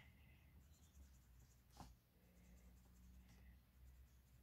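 Near silence: faint strokes of a felt-tip marker colouring in small circles on a savings-challenge chart, with a soft tick about two seconds in.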